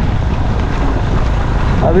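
Steady wind rush on the microphone of a camera riding on a moving motorcycle, mixed with road and engine noise.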